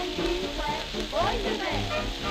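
A 1937 dance-band fox trot playing from a Brunswick 78 rpm shellac record, with sliding, swooping notes in the second half, under heavy crackle and hiss of surface noise.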